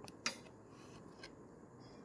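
One sharp click about a quarter second in and a fainter tick a second later, over low room tone.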